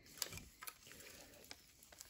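Faint, light clicks and taps of plastic model-kit parts on their sprue being handled and set down, a few small ticks spread over two seconds.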